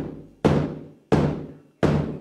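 Large hide-headed powwow drum struck with a padded beater: three slow, even beats, each ringing out and fading before the next.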